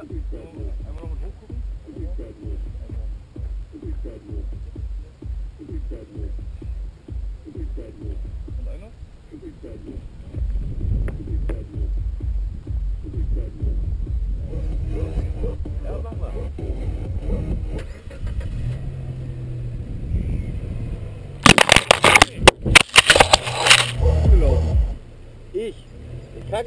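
Wind buffeting the microphone of a camera mounted on a Hyundai i30's hood, with the car's engine heard running from about ten seconds in. Loud crackling bursts from about three quarters of the way through.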